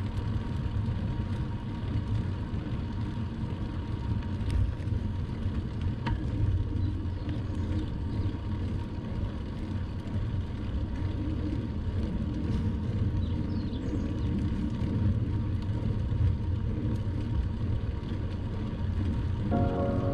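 Steady low rumble of wind and tyre noise on the camera's microphone as a bicycle rolls along a paved road at about 15 km/h. Background music starts just before the end.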